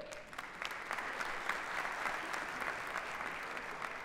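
A theatre audience applauding, a steady clatter of many hands clapping.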